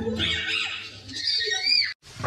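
High-pitched playful squeals from a woman and toddler: a short squeal near the start, then a higher squeal that rises and falls near the end and cuts off suddenly.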